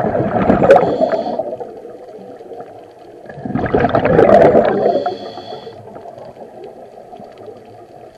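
A scuba diver's regulator underwater: two long bursts of exhaled bubbles, one at the start and one about halfway through, with quieter breathing noise between them.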